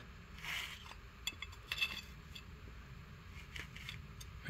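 Steel parking-brake bar being slid into place between drum brake shoes: a short scrape about half a second in, then several light metal clicks and clinks, with a couple of faint ticks later.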